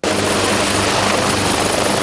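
Helicopter running close by: a loud, steady rush of rotor and engine noise that starts suddenly.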